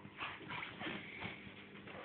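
A Staffordshire bull terrier making a run of short, irregular noises, several of them falling in pitch, as it wriggles on its back.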